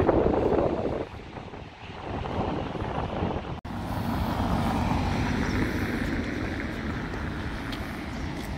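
Wind on the microphone, loudest in the first second, then an abrupt cut about three and a half seconds in to a steady street noise of traffic.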